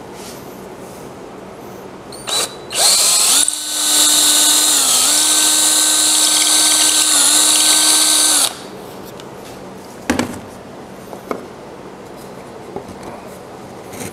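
DeWalt cordless drill turning a tenon cutter down a wooden dowel to size it round: a short blip of the trigger, then about six seconds of steady running whose pitch dips briefly twice under load. A couple of light knocks follow.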